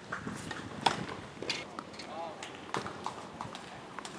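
Tennis racket striking the ball on a serve about a second in, the loudest sound, followed by sharper ball hits and bounces of the rally, about one every second or so.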